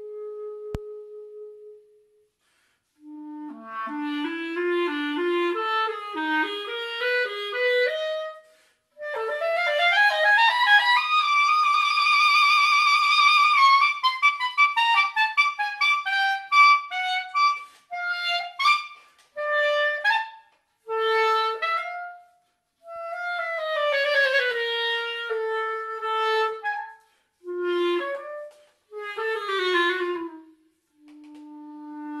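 Solo clarinet played unaccompanied: phrases of quick runs, a held wavering high passage around the middle, then short detached notes, with brief pauses between phrases.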